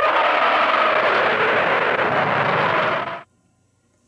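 A man's loud, raspy yell imitating an animal call, held for about three seconds and cutting off suddenly.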